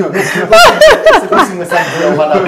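A person laughing in short repeated bursts, mixed with talk.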